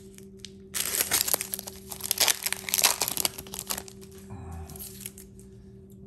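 A trading-card pack wrapper being torn open and crinkled by hand: a burst of crackling and rustling that starts about a second in and lasts roughly three seconds, then dies down.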